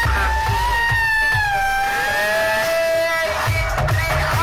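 Loud dance music from a large DJ roadshow sound system: a sustained high lead melody that slides and drops in pitch about halfway, over heavy bass beats that come back strongly near the end.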